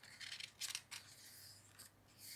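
A page of a picture book being turned by hand: soft paper rustling and swishing, mostly in the first second, with a lighter brush of the hand on the paper near the end.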